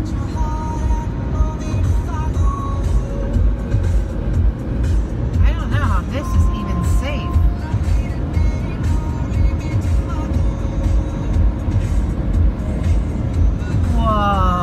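Steady low rumble of a truck travelling at highway speed, with music and a voice playing under it.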